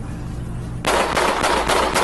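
A rapid string of about five gunshots, roughly a quarter of a second apart, starting just under a second in: a police officer opening fire.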